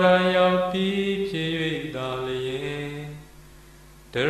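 A Buddhist monk chanting Pali verses in a single drawn-out male voice: a held note that steps down in pitch about a second in, then trails off near the end into a brief pause.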